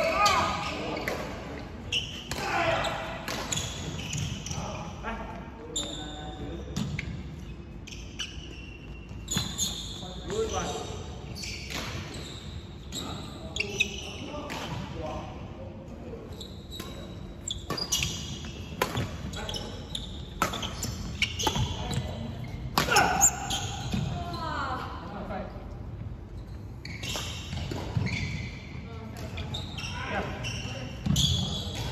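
Badminton rally in a large indoor hall: sharp racket strikes on a shuttlecock and footfalls on a wooden court, with short squeaks of rubber-soled shoes and players' voices in between.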